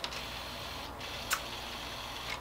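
Two light clicks of plastic LEGO Technic parts being handled, about half a second apart near the middle, over quiet room tone.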